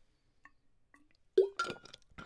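Drinking from a water bottle: a few faint small ticks while swallowing, then about one and a half seconds in a short, sudden plop as the bottle comes off the lips, followed by a couple of small knocks from the bottle.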